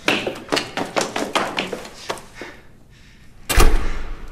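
Footsteps going quickly down hard stairs, about four steps a second, for the first two and a half seconds. After a pause, one heavy, deep thump comes near the end and is the loudest sound.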